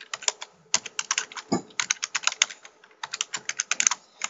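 Fast keystrokes on a computer keyboard, typing in quick runs broken by short pauses, with one heavier keystroke about a second and a half in.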